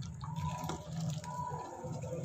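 Boiling Kashmiri tea kahwa being scooped up with a steel ladle and poured back into the steel pot, liquid splashing and dripping back in. The ladling aerates the kahwa as it cooks.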